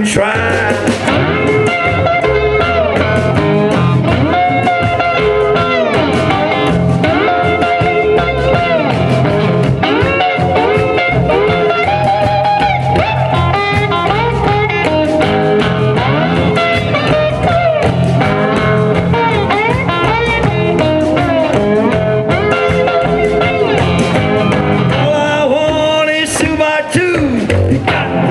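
Live blues band playing an instrumental stretch: electric guitar leading with bent, sliding notes over upright double bass and a drum kit.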